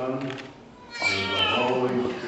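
An infant cries out about a second in, a loud, high wail lasting about a second, after a brief low murmur of a man's voice.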